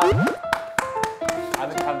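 Background music of short, quickly plucked notes jumping between pitches, with a light, playful feel.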